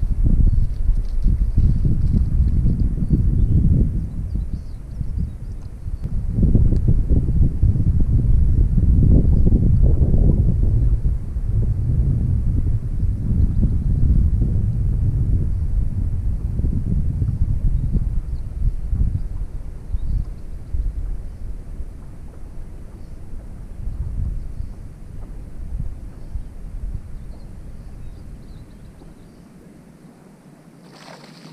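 Wind buffeting the camera microphone: a loud, gusty low rumble that swells and eases, dying down toward the end.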